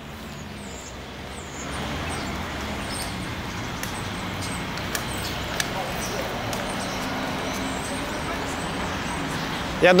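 Road traffic noise from cars on a city street, a steady wash of tyre and engine sound that grows louder about a second and a half in and then holds.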